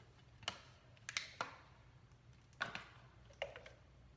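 A few scattered light clicks and taps, about five over four seconds, from plastic water bottles being handled and drunk from.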